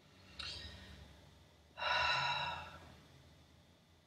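A person's breathing: a short sharp intake about half a second in, then a long, heavy exhale like a sigh about two seconds in, as the speaker calms down after getting heated.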